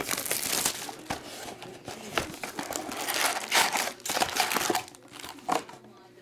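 Clear plastic shrink-wrap and foil card packs crinkling as a trading-card box is unwrapped and opened and its packs are handled, in irregular crackly bursts that thin out near the end.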